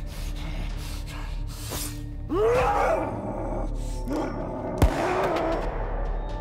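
Dramatic film score under a man's pained yell that rises in pitch about two seconds in and a shorter cry a little later, then a single sharp bang like a gunshot about five seconds in.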